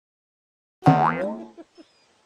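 Silence for almost a second, then a loud comic cartoon sound with a sliding, wobbling pitch that fades away over about half a second, followed by a couple of faint soft ticks.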